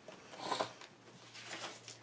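Handling noise of a paper-covered chipboard album being lifted and turned on a wooden tabletop: a short rustle and bump about half a second in, and a softer one near the end.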